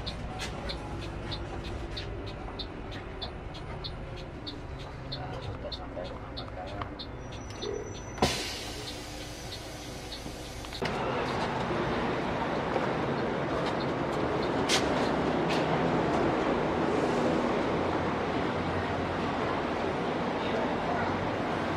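Inside the cab of a Mercedes-Benz double-decker coach: the turn-signal indicator ticking about twice a second over the running engine, then a sudden loud hiss of air about eight seconds in. Near eleven seconds the sound changes abruptly to a louder, steady noise of the parked bus and its surroundings.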